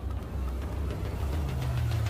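A low, steady rumble with a faint hiss over it, swelling a little about halfway through: a cinematic logo-reveal sound effect.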